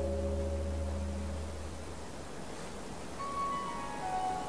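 Bell-like chime music: a deep, ringing tone dies away over the first two seconds, then a few higher chime notes come in about three seconds in.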